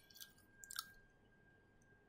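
Near silence: room tone, with a few faint clicks in the first second and a faint steady high tone.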